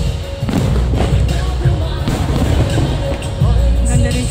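Loud music soundtrack of a pyromusical fireworks show with a heavy bass, with several sharp firework bursts going off over it, the first about half a second in and another near the end.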